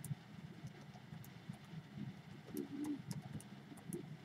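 Faint, scattered clicks of calculator keys being pressed as a calculation is entered, with a brief soft hum of a voice about two and a half seconds in.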